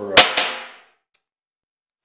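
Two sharp metallic clinks about a fifth of a second apart, the first the louder, each ringing briefly. Then the sound cuts out completely.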